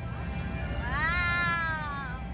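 A gull giving one long call from about a second in: it rises in pitch, holds, then slides down.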